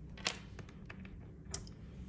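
Light clicks and taps of small nail-stamping tools (jelly stamper, steel plate, nail tip) handled on a tabletop, with two clearer clicks about a quarter second in and about a second and a half in.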